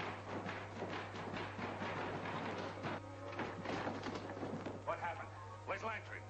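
Old film soundtrack: men's raised voices and a run of knocks and thumps over background music, with a steady low hum.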